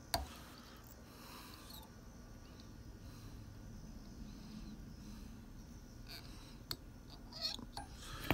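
Faint handling sounds from fly-tying tools and fingers at the vise: one sharp click just after the start, then quiet rustling, with a few small clicks near the end.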